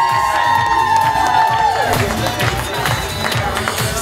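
Dance music over a crowd whooping and cheering. The held cheers fade about halfway through, leaving the music's steady beat.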